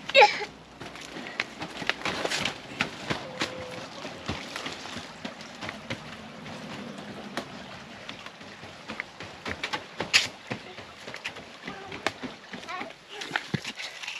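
Footsteps on a wooden footbridge and timber steps: irregular light knocks and scuffs of an adult and a toddler walking. A short, loud cry falling in pitch comes right at the start.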